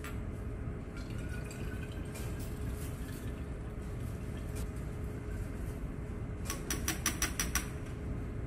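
Liquid reaction mixture poured through a funnel into a glass separatory funnel that already holds water, with a faint rising filling sound in the first few seconds. A quick run of light clicks comes near the end.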